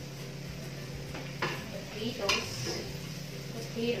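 Food being stirred and moved around in a frying pan with a utensil over a light sizzle. The utensil clinks sharply against the pan twice, about one and a half and two and a quarter seconds in.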